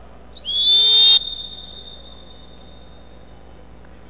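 Referee's whistle: one loud, high blast lasting under a second, starting about half a second in and cutting off sharply. Its echo hangs on for about a second afterwards.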